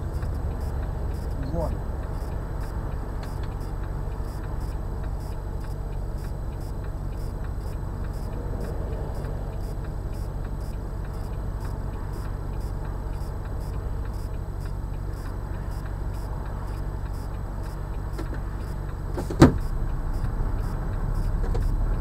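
Steady low hum of a car's idling engine heard from inside the stationary car, with motorway traffic passing. A single sharp knock comes about nineteen seconds in, and the sound grows a little louder near the end.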